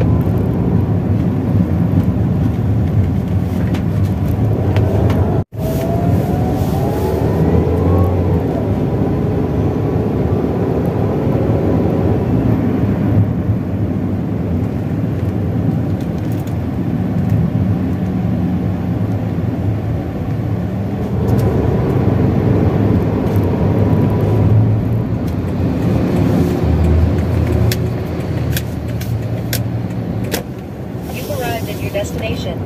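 Car engine and road noise heard from inside a moving car, a steady low rumble. A few seconds in, the engine pitch rises as the car accelerates. The sound drops out briefly about five seconds in.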